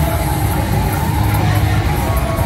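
Slot machine music and game sounds from a Dazzling Thunder Deep Violet video-reel slot as its reels spin and stop during a bonus round, over a steady low hum of casino background noise.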